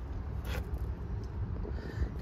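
Steady low outdoor background rumble with no engine running, and one short faint click or breath about half a second in.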